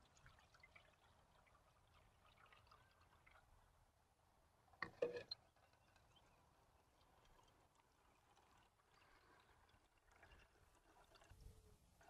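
Near silence, with faint water pouring and trickling as water is poured into a table-top rainfall simulator's perforated sprinkler trays and drips onto the soil samples. There is one brief knock about five seconds in.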